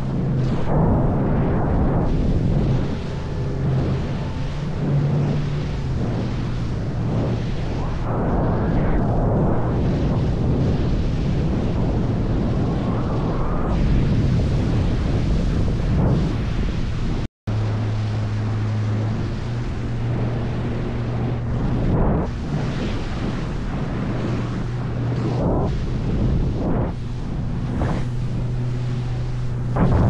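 Kiwikraft 585 HTS boat under way at speed: its outboard motor running as a steady low hum beneath heavy wind buffeting on the microphone and the rush of water off the hull. The sound drops out for an instant a little past halfway.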